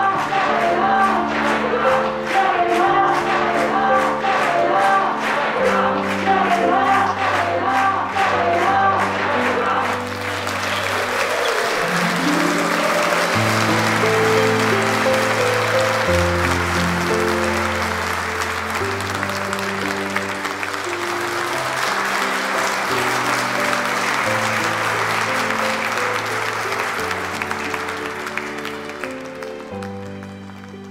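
A song with a singing voice and a steady beat. About ten seconds in, a crowd starts applauding over the music, and the applause lasts until just before the end.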